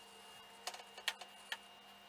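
Dell Dimension 2350 desktop PC running: a faint steady hum with four light clicks in the middle, typical of its hard disk drive seeking.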